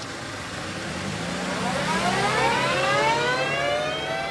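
A siren-like wail that rises steadily in pitch from about a second and a half in, growing louder over a steady hiss and low hum.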